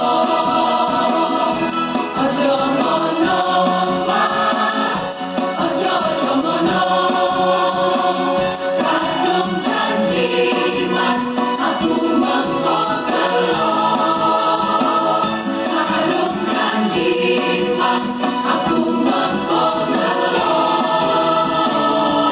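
A choir of women singing a song in harmony, several voice parts moving together at a steady level.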